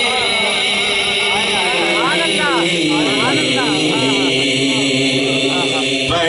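Male naat reciter chanting devotional verse through a microphone and loudspeakers, holding long ornamented notes that step down in pitch.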